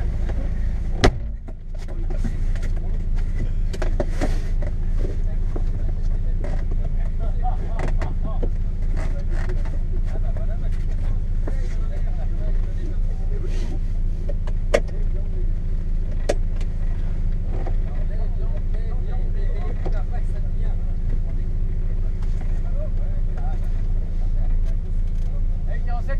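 Mazda MX-5 NB 1.8's four-cylinder engine idling steadily, heard from inside the cabin, with a few scattered clicks and rustles.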